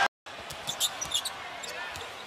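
Basketball court sounds over a low arena crowd: short high squeaks and taps from play on the hardwood. There is a split-second gap in the sound near the start.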